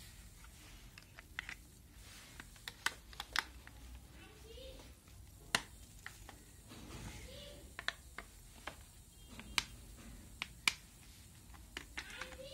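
Plastic back cover of a mobile phone being handled and pressed on, its clips snapping into place: a scattered series of short, sharp clicks, a few of them louder.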